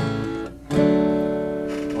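Acoustic guitar strumming the opening chords of a song: one chord at the start that fades, then a louder chord about two-thirds of a second in that rings on.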